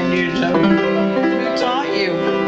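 Piano played on a keyboard: sustained chords with melody notes over them.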